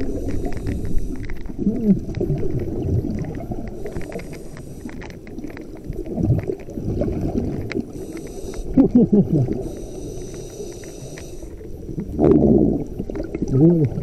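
Scuba diver breathing through a regulator, heard underwater: about four hissing inhalations come a few seconds apart, and between them run low burbling rushes of exhaled bubbles.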